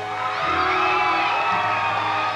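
Studio audience cheering and whooping over upbeat walk-on music.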